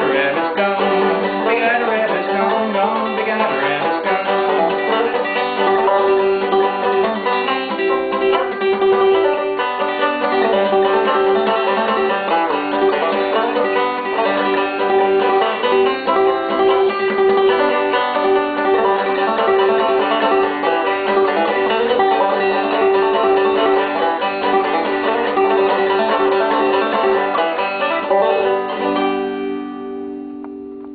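Five-string banjo played clawhammer style in open G tuning (gDGBD), a steady run of bright plucked notes without singing. Near the end the playing stops and a final chord rings out and fades.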